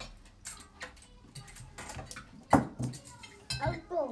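Metal cutlery clinking and scraping against china plates during a meal: a scatter of short clinks, the loudest about halfway through.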